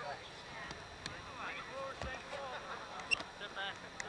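Indistinct, distant shouts and calls of rugby players on the pitch, with a single dull thump about two seconds in.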